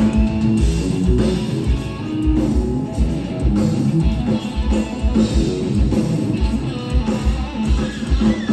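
Live rock band playing an instrumental passage: electric guitar over a steady pounding kick drum and full drum kit, with no singing.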